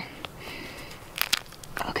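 A rotten horse hoof fungus being pried and broken off birch bark by hand: a few faint, short crackles and snaps, about a second in.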